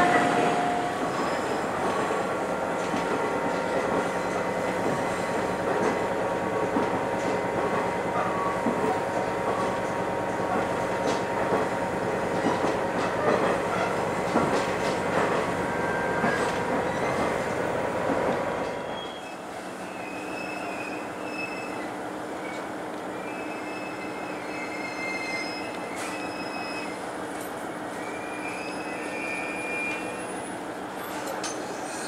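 Diesel railcar running, heard from inside the passenger cabin, with wheel squeal as it takes curves. About two-thirds of the way through the low rumble drops away sharply, leaving quieter running with thin high squeals as the train slows toward a station.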